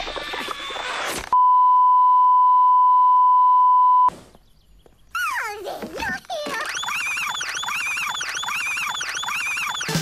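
A loud, steady electronic beep tone held for nearly three seconds, then cut off abruptly. A voice comes just before it, and after a short hush come sliding, warbling tones that swoop up and down about twice a second.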